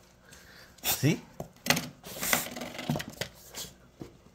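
Spring doorstop on the baseboard knocked by a puppy, giving several short twangs and rattles spread over a few seconds.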